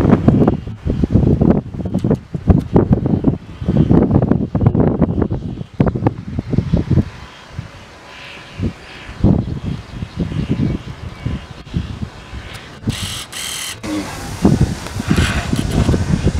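Wind buffeting the microphone in loud, irregular low rumbling gusts, with a quieter lull in the middle and a brief crackle near the end.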